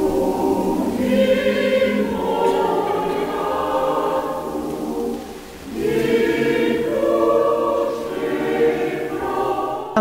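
Choir singing sacred music in long held chords, in two phrases with a short break about halfway through.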